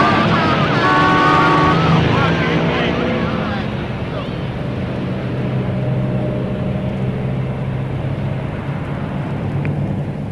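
A car engine running with a steady low drone, under a burst of laughter in the first two seconds.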